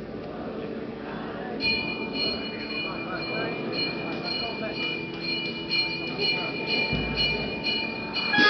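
Church bells begin ringing about a second and a half in, struck repeatedly a few times a second with a steady high ring, over the murmur of the crowd. A low rumble joins near the end.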